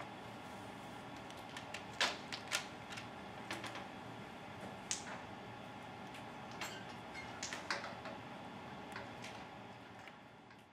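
Steady room hum with scattered light clicks and taps at irregular intervals, the sharpest about two seconds in and again near the middle.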